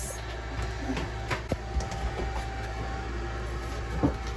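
A steady low hum with a few light clicks.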